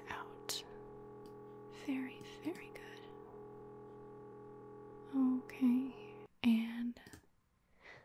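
MRI scanner noise, a steady hum of several tones, that cuts off suddenly about six seconds in as the scan sequence ends. Soft whispering and breaths lie over it.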